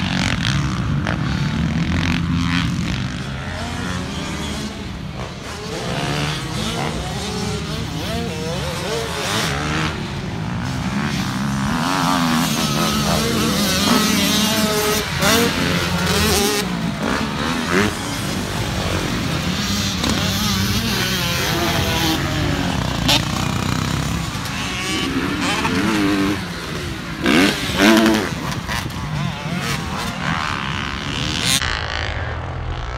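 Several motocross dirt bikes being ridden around a dirt track, their engines revving up and easing off over and over as the riders accelerate out of turns and over jumps.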